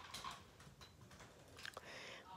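Near silence with a few faint clicks of toy monster trucks and plastic pieces being handled by hand.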